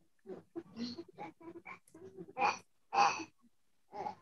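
A person's faint, breathy voice sounds in short bursts over a video-call line, with silences between them.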